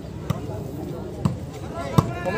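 Volleyball slapped by players' hands during a rally: three sharp hits, a second or less apart, the last the loudest, over crowd chatter.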